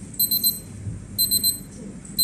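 Digital countdown timer's alarm beeping as its countdown runs out: high-pitched beeps in quick bursts of four, one burst about a second after the other.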